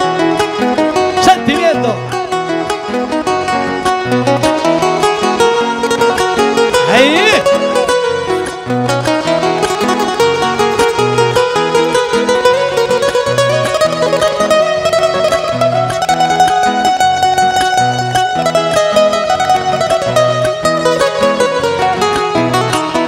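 Live Panamanian folk music: acoustic guitar playing an instrumental interlude between sung décimas over a steady bass beat about once a second. A short voice cry comes about seven seconds in, and a long held note slowly rises and falls through the second half.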